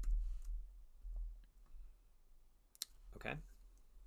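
Computer keyboard keystrokes, a few sparse clicks as code is typed, with one sharp click shortly before 3 s, over a low steady hum.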